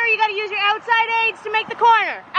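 A high-pitched voice calling out with long, drawn-out vowels, no words made out.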